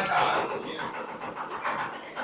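A group of teenagers chattering over one another with breathy, panting laughter.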